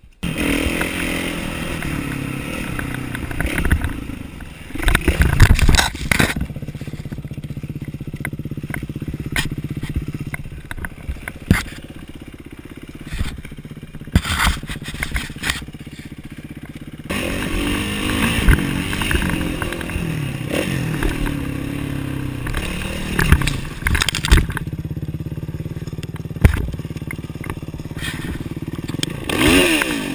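Kawasaki KX450F single-cylinder four-stroke motocross engine running, its revs rising and falling with the throttle. Loud knocks and rattles around five seconds in, with a quieter, lower-revving stretch after it before the engine is revved up again.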